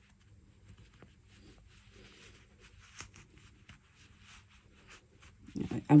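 Faint, scattered rustling and scratching of a crochet hook working stuffing down into a crocheted doll arm, with a small click about three seconds in.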